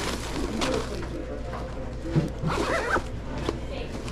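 A DoorDash red insulated delivery bag being zipped shut over a bagged food order, with rasping runs of the zipper about half a second in and again near the three-second mark.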